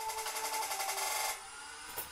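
Background trap-style music: held tones over a fast ticking beat, which drops away to a much quieter level a little over a second in.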